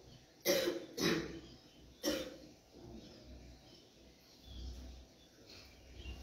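A person coughing: three short coughs within about two seconds.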